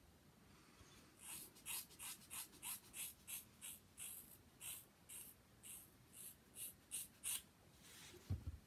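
Scissors snipping through a lock of hair: a run of about sixteen quick, crisp cuts, roughly three a second, starting about a second in and stopping near the end.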